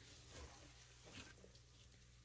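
Near silence, with two faint, soft rustles of a gloved hand digging into moist worm-bin compost and leaf bedding, about half a second in and again just after a second.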